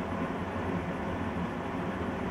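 Steady, even background noise, a low hum with hiss, with no distinct events.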